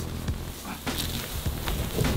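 Large empty plastic storage tank being tipped upright onto dry grass: a few faint hollow knocks over rustling.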